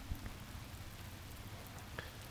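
Faint, steady hiss of light rain outdoors, with a soft knock near the start.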